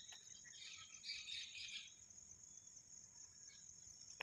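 Faint, steady high-pitched insect chirring, with a cluster of brief chirps in the first couple of seconds.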